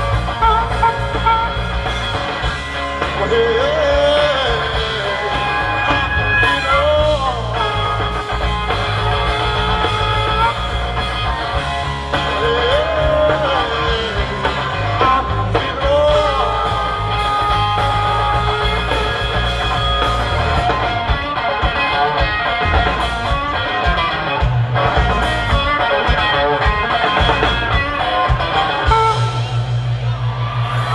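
Live blues-rock band playing an instrumental passage: electric bass and drums under an electric guitar and a harmonica played into a vocal microphone, with long held notes that bend in pitch.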